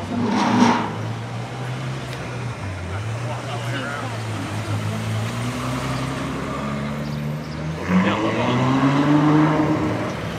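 Ferrari 812's V12 engine running at low speed, with a sharp blip about half a second in, then rising in pitch near the end as it pulls away.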